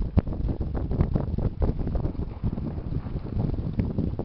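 Muffled crunching and thumping of movement through deep fresh snow close to the microphone, irregular and uneven, with wind buffeting the microphone.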